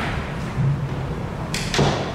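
Papers being handled and shuffled close to a table microphone, with a short rustle and thump about one and a half seconds in, over a steady low room hum.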